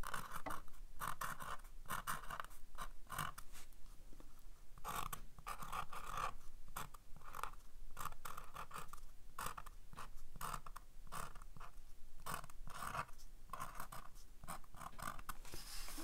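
Sharpie pen writing on cold-press cotton watercolor paper: a long run of short, irregular pen strokes as letters are drawn.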